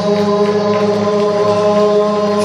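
A group of men's voices chanting a religious song together, holding long sustained notes over a steady low drone.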